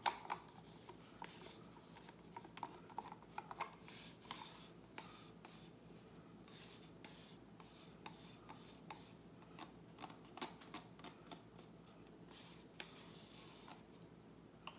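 Faint, scattered scraping and light ticking of plastic paint cups and wooden stir sticks being handled as acrylic paint is layered into the cups, with a few closer clusters about four seconds in and near the end.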